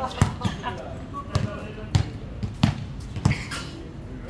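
A basketball being dribbled on a hard court: about six dull thuds in four seconds, at uneven spacing.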